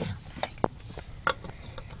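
Handling noise: a few sharp clicks and taps as small plastic toy figures and the phone filming them are moved about.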